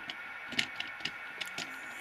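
Light, scattered clicks and ticks of a hand handling a plastic model locomotive tender carrying a mini camera, over a steady faint background hum.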